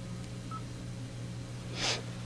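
Steady electrical hum on an interview-room CCTV recording, with a faint short beep about half a second in and a quick intake of breath near the end.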